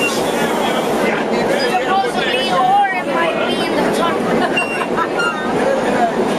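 Several voices chattering over one another, children's voices among them, over the steady running noise of a vintage R1/R9 subway train.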